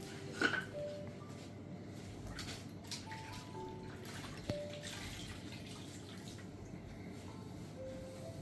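Water splashing and dripping as a towel is dipped into a bowl of water and wrung out. A sharp wooden knock about half a second in comes from bamboo massage sticks being set down, and there is a lighter knock later on.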